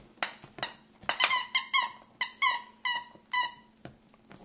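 A dog's squeaky plush toy squeaking in a quick run of about ten short, high-pitched squeaks, each sliding slightly down in pitch, as the dog bites and chomps on it.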